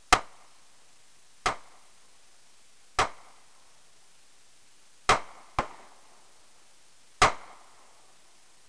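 A 9mm pistol fired six times at a slow, even pace, about one shot every one and a half to two seconds, with two shots in quick succession about five seconds in. Each report is a sharp crack with a short fading tail.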